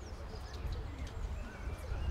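Outdoor ambience: faint background voices and a few short bird chirps over a steady low rumble.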